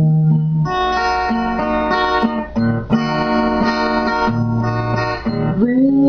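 Acoustic guitar accompaniment in an instrumental passage between sung lines, carrying a melody of held, steady notes that change about once a second.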